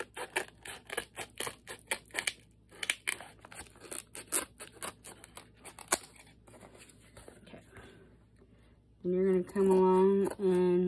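Scissors cutting through a hardcover book's cover board and spine cloth to take the spine off, a quick run of crisp snips for about six seconds ending in one sharp snap. Quieter paper handling follows, and a person's voice sounds in steady tones near the end.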